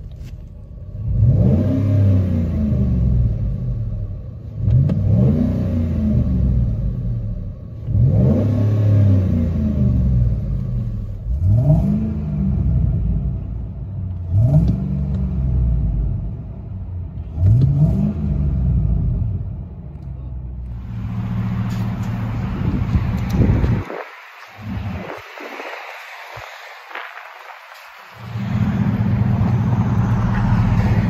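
Ford 5.4L Triton V8 heard from inside the cab, revved about six times in a row, each rev rising and falling in pitch. The exhaust is first a Flowmaster Super 44 muffler, then a Carven R-Series. Near the end the revving stops and a steadier engine rumble with wind noise takes over.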